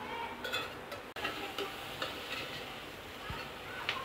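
A spoon stirring and scraping chunks of elephant foot yam and onion in an open aluminium pressure cooker, with a faint sizzle of the masala frying underneath. The scrapes are light and come mostly in the first second.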